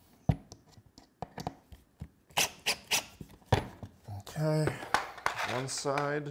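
Irregular sharp clicks and taps of hand tools and small screws being handled on a plywood crosscut sled. A man's voice follows over the last couple of seconds.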